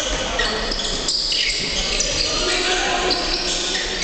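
Basketball game sounds in an echoing sports hall: the ball bouncing on the wooden court, short high squeaks from sneakers, and players' voices.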